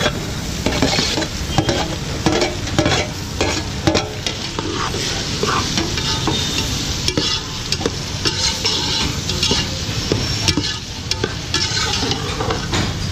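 Metal spatula scraping and knocking against an aluminium pot as chopped tomatoes are pushed in off a steel plate and stirred into frying onions, over a steady sizzle.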